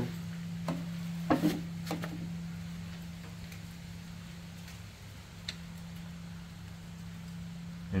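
A few light clicks and taps of an Allen key being pushed through the eyes of bicycle disc brake pads in the rear caliper, with one sharp click about halfway through, over a steady low hum.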